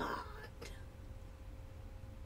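A spoken word trailing off into a breathy exhale, then a pause filled only by a faint steady hum and low rumble in the recording.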